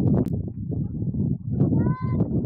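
Outdoor field sound of voices calling during a lacrosse game, with a dense busy background and scattered sharp clicks. Near the end comes one short, high-pitched shout.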